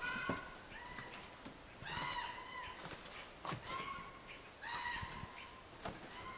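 Old wooden floorboards creaking under footsteps: a series of drawn-out, squealing creaks roughly once a second, some following a dull knock of a step on the boards.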